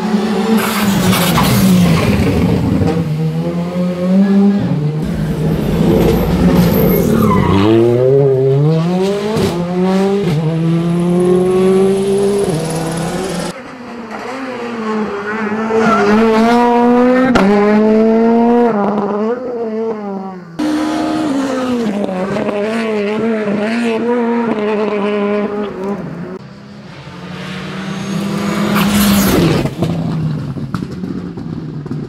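Rally cars racing past one after another on a closed stage, their engines revving hard and rising and falling in pitch through quick gear changes. A car passes close and loud near the end.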